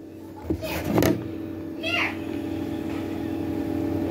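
Ceiling fan running with a steady hum that sets in after a click about half a second in, with a few rustles and knocks from the phone being handled.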